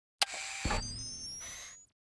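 Produced intro sound effect: a sharp hit, then a hissing whoosh with thin rising tones and a low thud, fading out after about a second and a half.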